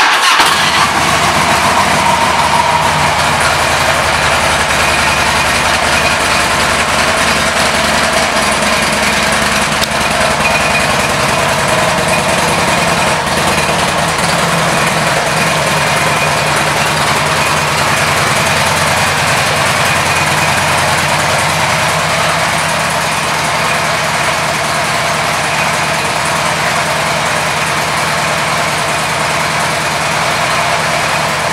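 2006 Harley-Davidson Ultra Classic's Twin Cam 88 V-twin starting up at the very beginning, then idling steadily.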